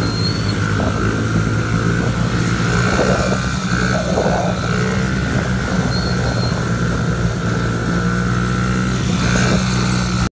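Small dirt bike engine running at a steady, even pitch while the bike is held up in a wheelie, with other small dirt bikes running around it.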